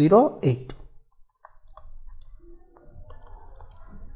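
A last few spoken words at the start, then a few faint clicks about a second and a half in, amid faint low background noise.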